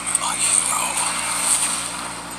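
A film trailer's soundtrack playing from a portable DVD player's small built-in speaker and re-recorded off the speaker, sounding thin and hissy, with indistinct voices and effects.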